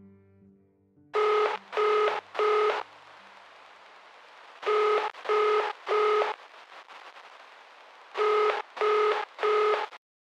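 Electronic telephone ringing: three bursts of three short beeps, each burst about three and a half seconds apart, over a faint hiss. A low musical tail fades out in the first second.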